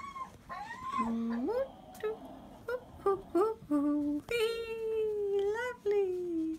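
A young child's wordless vocalising: high whimpering and humming notes that slide up and down in pitch, several short ones and then a longer held note about four seconds in.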